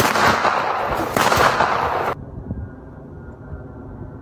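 Loud crackling, hissing noise in two bursts that cuts off abruptly about two seconds in, followed by a quieter background with a faint steady hum.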